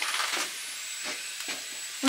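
Clear plastic wrap around a newly unboxed foam mattress rustling and crinkling as hands grip and pull at it, in short crackles over a steady hiss.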